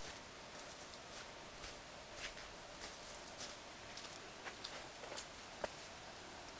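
Faint, irregular crunches and clicks of footsteps on a snow-covered mountain trail, over a quiet background hiss.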